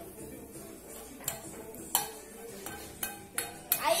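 A frying pan and a utensil knocking and scraping against a plastic bowl as cooked egg is emptied out of the pan: a handful of short clinks, spaced about half a second apart, in the second half.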